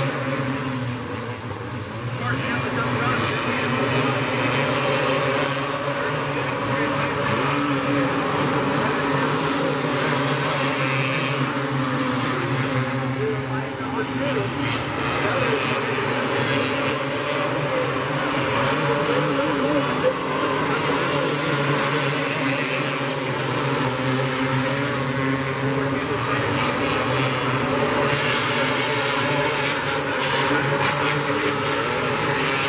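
A field of outlaw karts racing on a dirt oval, several engines running together in a steady, continuous drone.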